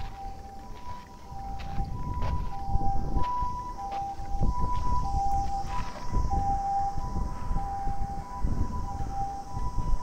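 Ambulance two-tone siren alternating a high and a low note about every half second, the Japanese hi-lo "pee-poh" pattern, with a low rumble underneath.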